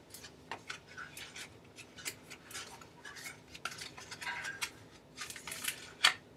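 Pages of a paper picture book being turned and handled close to the microphone: a quiet run of scattered small clicks and paper rustles.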